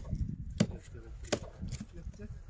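A small knife slicing an onion held in the hand, with no board: crisp cuts about every two-thirds of a second, as the pieces drop into a pot.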